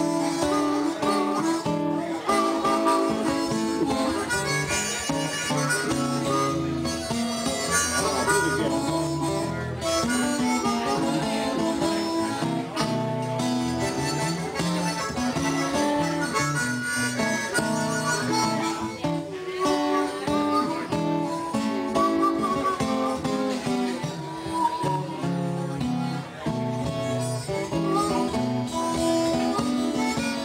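Blues harmonica playing lead over acoustic guitar accompaniment, an instrumental passage with no singing.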